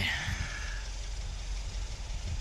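Car engine idling in the background, a steady low rumble.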